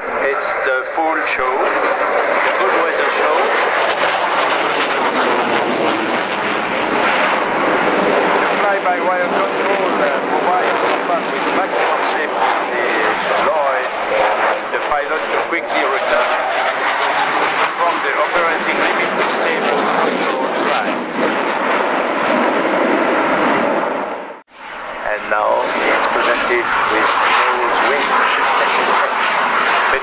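Dassault Rafale's twin Snecma M88-2 jet engines, loud and steady through a low display pass, with a brief drop-out about 24 seconds in.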